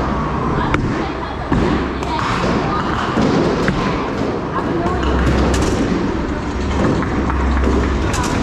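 A bowling ball rolls down the lane with a low, steady rumble from about five seconds in. Under it are the background voices and scattered knocks and clatter of a busy bowling alley.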